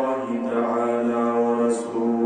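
A man's voice chanting melodically into a microphone, holding long steady notes, with a short breath-like hiss and break near the end before the chant carries on.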